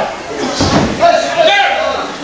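Voices shouting in a large hall, with a slam on the wrestling ring.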